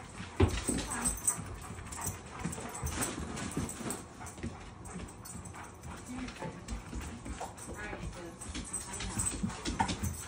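A Dogo Argentino whining and whimpering at the front door, left behind while another dog goes out for a walk, with a few sharp knocks.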